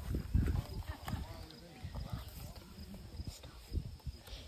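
Handling noise from a phone microphone: irregular low bumps and rubbing as the phone is moved about, with faint voices underneath.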